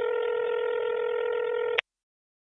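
Telephone ringback tone heard through a phone earpiece, the ringing of a call that has not yet been answered. One steady, thin-sounding tone that cuts off sharply near the end.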